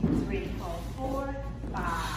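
A woman's voice talking, the teacher calling out dance steps.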